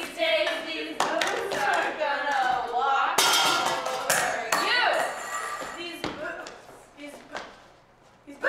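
Performers' voices in a large hall, over scattered sharp taps and claps. The sound dies away over the last few seconds.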